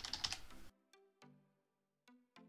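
Computer keyboard typing: a quick run of key clicks that cuts off suddenly under a second in. Then comes quiet background music, a few separate notes that each fade out.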